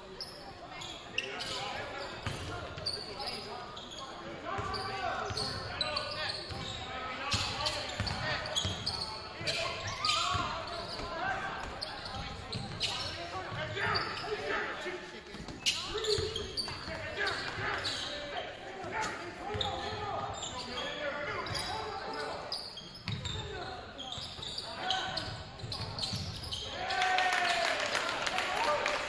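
A basketball dribbled on a hardwood gym court during live play, with scattered voices of players and spectators, echoing in a large gymnasium.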